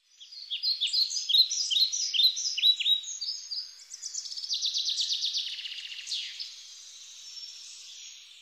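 Birdsong: repeated quick notes sliding down in pitch, several a second, then a fast trill from about four seconds in, growing fainter toward the end.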